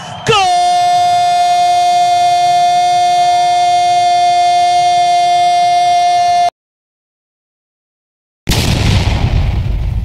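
Football commentator's long, steady goal shout, a single held 'gooool' that is cut off abruptly about six and a half seconds in. After two seconds of silence comes a loud boom sound effect that rumbles away as it fades.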